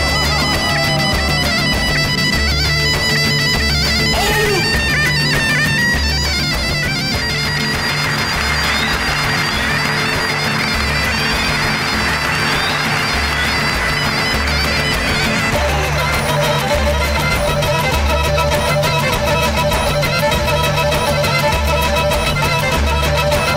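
Black Sea horon dance music: a tulum (bagpipe) melody over held drone tones and a steady, repeating low beat. A wash of crowd noise rises over the music in the middle.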